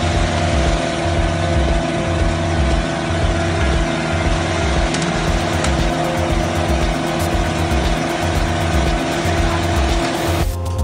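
Engine of a small ride-on asphalt road roller running steadily at close range.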